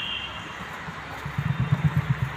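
Emu drumming: a low, rapidly pulsing thrum that sets in a little past halfway, over a steady hiss.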